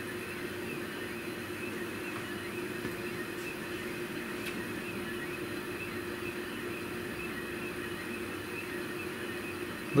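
Stepper motors of a CNC flat coil winder running as the tool head lays fine wire in a spiral: a steady hum with a constant tone and a few faint ticks.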